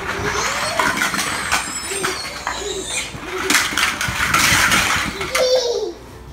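Inflatable vinyl play tent being shoved and tipped by children: vinyl rubbing and crumpling with repeated thumps, mixed with short vocal sounds from young children.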